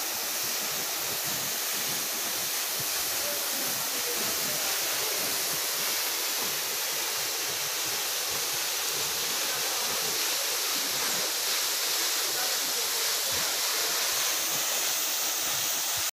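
Waterfall: a tall, thin fall of water dropping about 200 feet onto rocks and into a plunge pool, heard as a steady, unchanging rush of splashing water.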